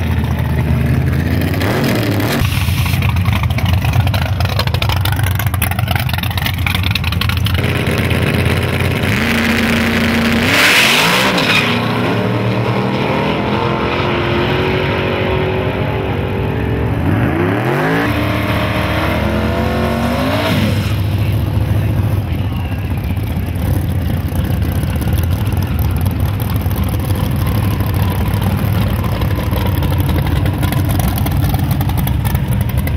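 Drag-race car engines at a dragstrip: loud, steady running through a burnout, then, about ten seconds in, a launch with a brief rush of noise. After that the engines rise in pitch and drop back several times as the cars shift up through the gears and pull away. Steady engine sound from the next car's burnout follows.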